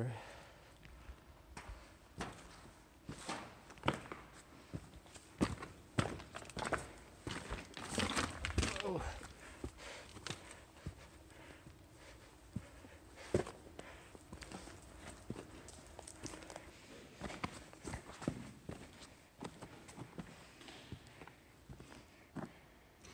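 Irregular footsteps on loose rock and debris underfoot.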